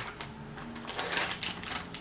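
Foil wrapper of a block of cream cheese crinkling as it is peeled open by hand, a few short faint crackles.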